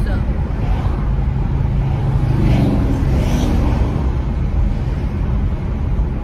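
Steady low rumble of road and engine noise inside a moving car's cabin at highway speed.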